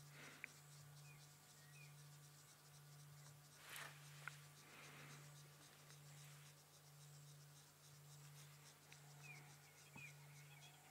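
Near silence: faint outdoor ambience with a low steady hum, a few faint high chirps, and a soft brush of noise with a small tick about four seconds in.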